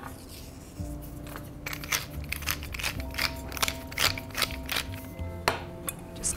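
Wooden pepper mill grinding: a run of crisp cracking clicks, about three or four a second, starting near the middle, over soft background music.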